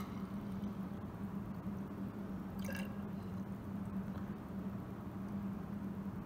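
Water being poured from a glass flask into a glass graduated cylinder, a soft trickle with a short drip or splash a little under halfway through, over a steady low room hum.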